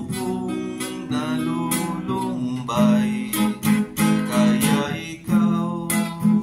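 Acoustic guitar strummed in a steady rhythm, about three strokes a second, with the chords ringing on between strokes.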